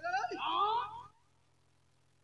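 A man's voice over a stage microphone gives a short sliding, wavering exclamation lasting about a second, without clear words. After that only a low steady hum from the sound system is left.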